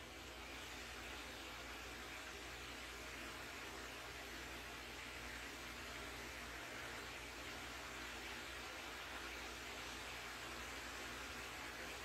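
Faint, steady hiss of room tone and microphone noise, with no distinct events.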